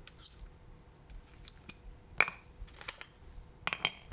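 Clicks and clacks of a Sony FX6 camera body and a Sony 24-70 GM II lens being handled on a tabletop. There is one sharp click about two seconds in and a quick run of clicks near the end.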